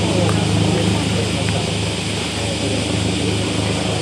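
Police vehicles driving slowly past at low speed, their engines making a steady low hum, with voices murmuring in the background.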